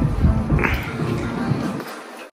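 Background music with a steady low beat, and a short high cry that rises and falls about half a second in.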